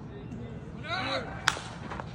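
A voice calls out briefly, then a single sharp pop about a second and a half in: the baseball smacking into the catcher's leather mitt on a swing and miss.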